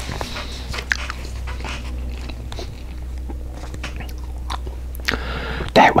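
Close-miked chewing of a mouthful of cabbage roll casserole, with many small wet mouth clicks.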